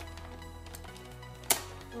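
Background music with steady sustained notes, and about one and a half seconds in a single sharp snap from a Nerf Vortex Vigilon disc blaster being fired.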